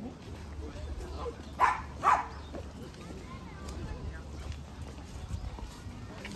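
A small dog barking twice, about half a second apart, roughly a second and a half in, over the steady murmur of a walking crowd's voices.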